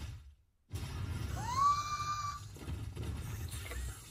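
Anime fight-scene sound effects: a short hit, a brief gap, then a sustained crash with a low rumble, over which a high tone rises and holds for about a second.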